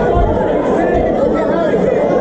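Crowd chatter: many voices talking at once in a large hall, a steady babble with no single voice standing out.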